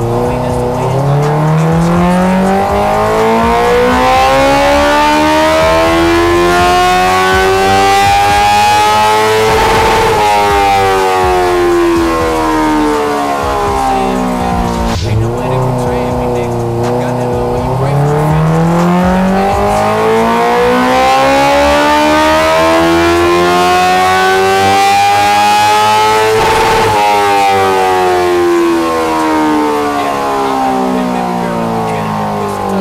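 Honda CB650R's inline-four engine making two wide-open-throttle power runs on a chassis dynamometer after an ECU flash tune. In each run the pitch climbs steadily for about nine seconds to a high-revving peak, then falls away as the throttle is rolled off. Between the runs it settles briefly low, about halfway through.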